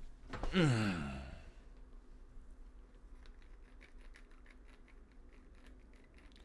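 A man's breathy sigh, falling in pitch, about half a second in, followed by a few seconds of soft computer keyboard clicks.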